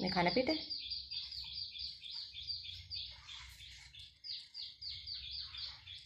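A small bird chirping in a fast, even series of short high-pitched notes, about four a second, with a short break about halfway through.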